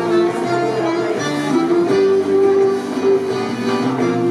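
Live folk band playing a scottische dance tune: a melody of held notes on flute and button accordion over strummed guitars and bass.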